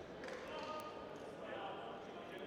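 Quiet large sports-hall ambience between badminton rallies: faint distant voices and scattered faint court noises from the surrounding courts.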